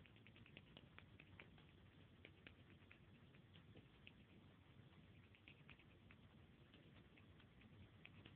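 Near silence with faint, irregular small clicks and scratches scattered through it.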